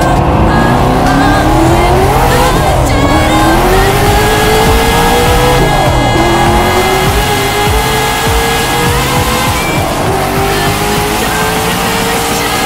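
Hennessey Venom GT's twin-turbo 7.0-litre V8 under full-throttle acceleration, its pitch climbing through each gear and dropping sharply at upshifts about two and a half and six seconds in. Music plays underneath.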